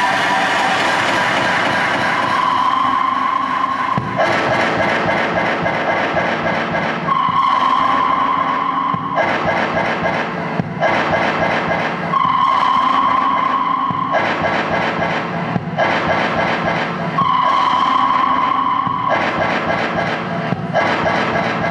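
Harsh noise music from a case of electronics and effects units: a loud, dense wall of noise. Every two to three seconds it switches between a held, piercing tone and fast stuttering pulses.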